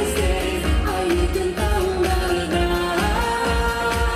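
A woman singing a pop song live into a microphone over amplified backing music with a steady bass beat. About three seconds in, she steps up to a long held note.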